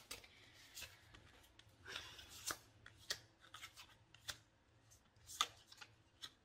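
Tarot cards being shuffled and handled: faint, irregular soft rustles and clicks of card stock, a few louder ones about halfway through and near the end.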